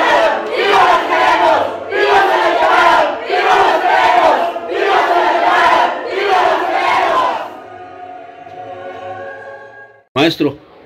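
Many voices chanting and shouting a protest chant together, about one shout a second. The chanting stops about seven and a half seconds in, leaving a quieter held tone that fades out.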